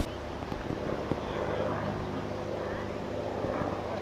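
A steady low hum with faint voices in the background, like a distant engine in open air.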